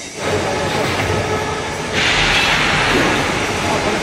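Loud, steady machine-like noise, getting louder about two seconds in.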